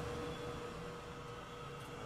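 Quiet, steady background hum with a faint tick near the end.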